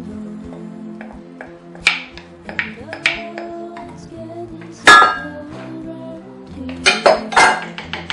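Background music with a steady tune, over a spoon clinking against a dish and an enamelled cast-iron pot as diced vegetables are scooped in. The sharpest clink comes about five seconds in, with a quick cluster of them near the end.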